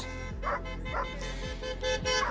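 Background music with steady held notes, and a dog barking twice, short barks about half a second apart near the start.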